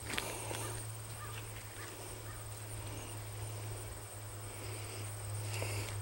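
Faint rustling of leafy plants and light footsteps through a planted field, over a steady low hum and a thin, steady high-pitched whine.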